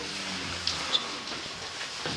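A couple of light clicks and a short high metallic clink as the small copper ritual bowls are handled, over steady room hiss.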